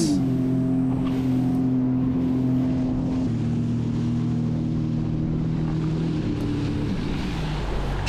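Sea-Doo jet ski running at planing speed, its engine and the spray off the hull making a steady rush. Background music with held chords plays underneath.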